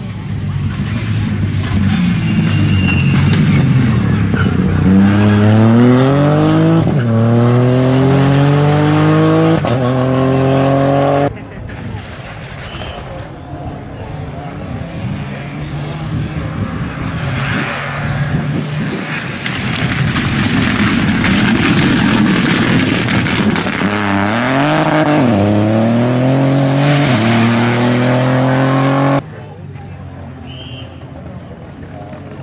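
Rally car engines accelerating hard on a closed stage, the pitch climbing through quick gear changes. There are two passes: the first is cut off suddenly just over a third of the way in, and the second builds up and climbs through the gears near the end before being cut off abruptly.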